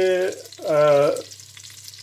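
Breadcrumbed fish fillets sizzling as they shallow-fry in a pan, a steady faint frying hiss. A man's voice lies over it for about the first second.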